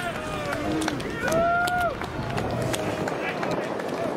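Shouted calls from players on a soccer pitch, with one long held call about a second in, over open-air background noise and a few sharp knocks from kicks and footfalls.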